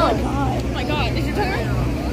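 Girls talking close to the phone over the steady low running hum of a nearby tour bus engine.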